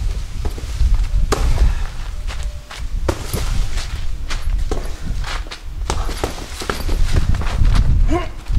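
A person moving around and striking a hanging heavy punching bag: scuffing footsteps and irregular sharp thuds, over a steady low rumble.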